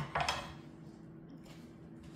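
Two short knocks of a kitchen knife on a hard kitchen surface at the start, a quarter second apart, then quiet with a faint steady hum.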